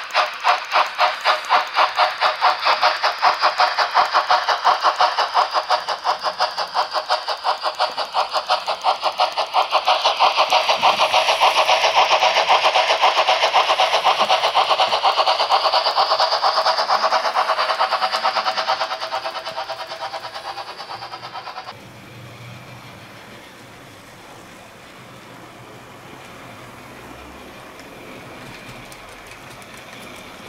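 Model steam locomotive's DCC sound decoder playing a steady run of rapid, hissing exhaust chuffs as the locomotive runs. The chuffs fade and then stop abruptly, leaving only a quieter, steady running noise.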